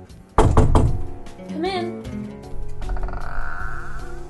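Background music with one loud thud about half a second in, the loudest thing here, followed by a short cry that rises and falls in pitch and then a held, wavering tone.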